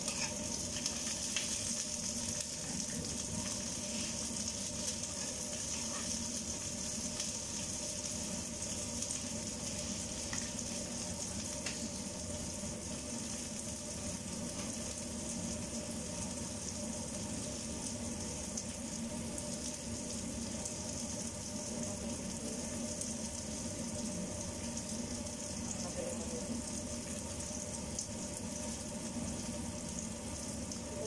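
Chopped green vegetables sizzling steadily as they fry in a nonstick frying pan, with a few light clicks of a fork stirring against the pan near the start.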